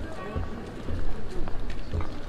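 Outdoor crowd ambience: scattered voices of passers-by talking, with low thuds about twice a second and a few sharp clicks.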